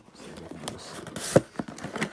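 Cardboard shipping box being handled and opened by hand: scraping and rustling of the carton, with a few clicks and one sharp snap a little past halfway.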